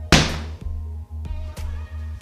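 A single sharp smack of a rubber slam ball striking, about a tenth of a second in, dying away within half a second. It shows that the ball does not hurt when it lands on a person. A steady background music track runs throughout.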